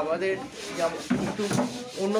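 A man talking, with one brief sharp click about one and a half seconds in.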